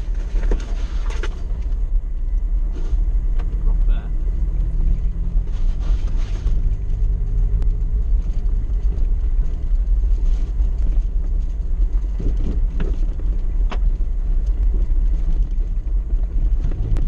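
Suzuki 4x4 crawling over a rough, rutted dirt track, heard from inside the cab: a steady low rumble with an engine hum and occasional knocks and rattles as it goes over bumps.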